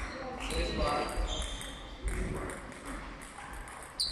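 Table tennis rally in a footwork drill: a celluloid ball clicking off bats and the table several times, with sneakers squeaking briefly on the sports-hall floor as the player lunges.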